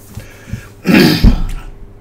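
A man clears his throat once, about a second in: a single short, rough burst lasting under a second.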